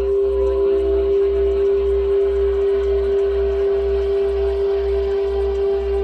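A steady, unbroken electronic tone with fainter tones above it, over a low throb pulsing about twice a second: a subliminal 'frequency' track.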